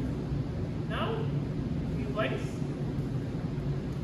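Akita mix dog whining: two short, high cries that fall in pitch, about a second in and again just after two seconds, over a steady low room hum.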